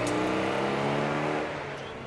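Citroën 2CV's air-cooled flat-twin engine running steadily as the small car drives off, its note dropping in level about a second and a half in.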